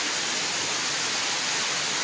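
Steady, even hiss of background noise with no breaks or separate events.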